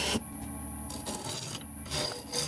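Turning tool cutting a spinning wood blank coated in epoxy resin on a lathe, a scraping, hissing cut at the start, again about a second in and near the end, over the lathe's steady low hum.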